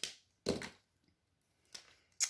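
Sharp plastic clicks of alcohol-marker caps being snapped on and off and markers set down on the table, three in all, the loudest about half a second in.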